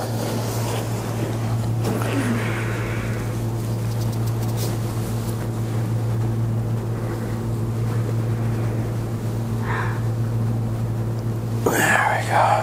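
A steady low mechanical hum with a faint hiss over it, unchanging throughout; a brief soft sound comes just before the end.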